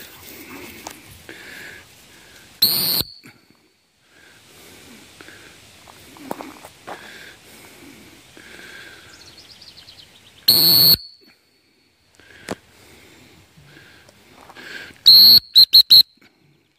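Dog-training whistle blown to direct a retriever on a blind retrieve: one sharp blast about three seconds in, a longer blast about ten and a half seconds in, and a quick run of short toots near the end.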